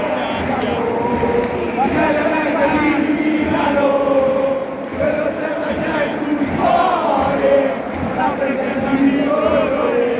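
Football stadium crowd singing and chanting together, many voices holding long notes at a steady, loud level.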